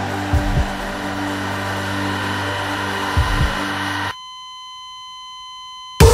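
Sound-effect intro of a pop track: a steady buzzing drone with two brief pairs of low thumps. A little after four seconds it cuts off suddenly into a steady, high electronic beep that holds for about two seconds.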